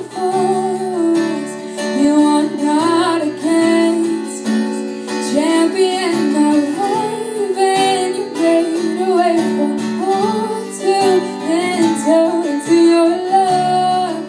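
A woman singing a melody with long held notes into a microphone, accompanied by a strummed acoustic guitar.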